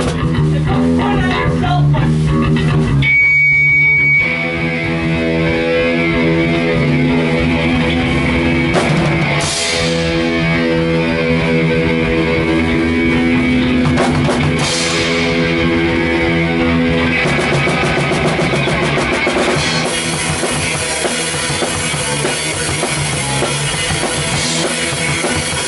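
Hardcore punk band playing live: distorted electric guitar and bass ring out long sustained chords, and the drum kit comes in during the last few seconds.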